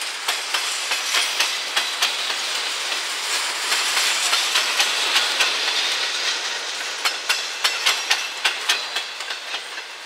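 Double-stack container well cars of a freight train rolling past, with a steady rush of wheel-on-rail noise and repeated sharp wheel clicks. The clicks come sharper and more evenly spaced in the last few seconds, about three to four a second.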